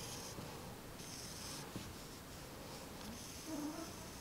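Faint rasp of beading thread being drawn through stacked felt, ultrasuede and shibori ribbon, in three short pulls, with a small click near the middle.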